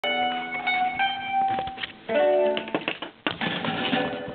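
Guitar being played: plucked notes and chords ring out, the chord changes about two seconds in, and a sharp strum comes near the end.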